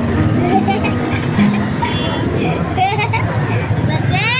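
Mostly speech: a voice asking about water, and high children's voices, over a steady background of street traffic and crowd chatter.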